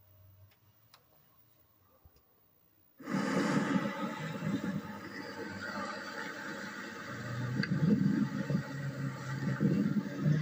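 Old camcorder audio played back through a television: near silence with a few faint clicks, then a loud, rushing, fluctuating noise that starts suddenly about three seconds in.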